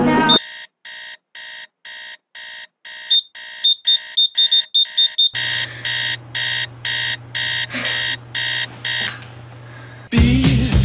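Electronic alarm clock beeping in an even repeating pattern of about two beeps a second. The beeps are faint at first, then sharper, quicker beeps join about three seconds in. From about five seconds in the beeping is louder over a low steady hum, and it stops about a second before the end.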